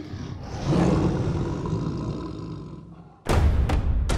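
A lion roaring, one long roar that fades away over about three seconds. Then drum-heavy music starts abruptly near the end.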